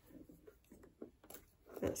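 Faint rustles and small taps of paper cut-outs being handled by hand on a cutting mat, a few light touches spread over the first second and a half, then a single spoken word near the end.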